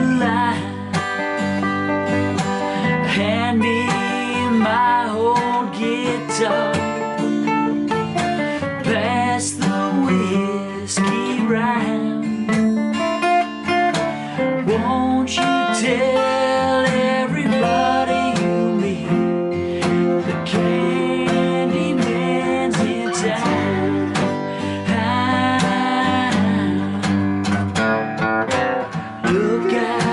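Two acoustic guitars playing a song together, with a man singing over them.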